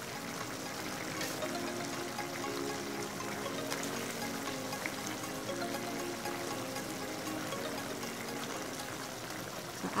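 Chicken strips simmering in butter and their juices in a frying pan: a steady bubbling sizzle as the chicken cooks through. Soft background music plays along with it.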